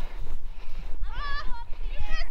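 A child's high-pitched call from far off, about a second in and lasting about half a second, over a low rumble of wind on the microphone.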